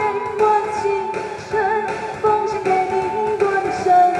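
A woman singing a pop song live into a microphone over a backing track.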